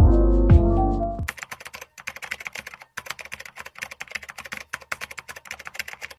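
Background music that cuts off about a second in, followed by rapid, irregular computer-keyboard typing clicks, a typing sound effect.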